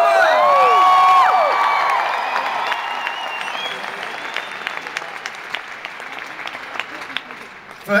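Large arena audience applauding, with a few long high shouts from fans in the first second or so; the applause gradually dies away.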